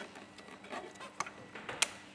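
Plastic quick-release fuel pipe connector being worked onto the back of a diesel fuel filter housing by gloved hands, with faint rubbing and a small tick, then snapping home with one sharp click near the end.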